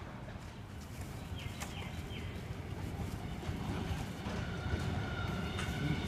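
Sydney Trains Tangara (T set) electric train approaching the station, a low rumble growing steadily louder, with a thin steady whine joining about two-thirds of the way in. A few short bird chirps about a second and a half in.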